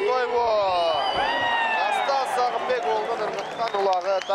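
Excited male sports commentator's voice, with one long drawn-out call in the middle.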